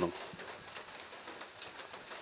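A pause in speech filled only by faint, steady background noise with a few light clicks.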